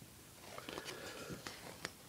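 Pages of a glossy paper catalog being turned and handled: faint paper rustling with a few light clicks, starting about half a second in.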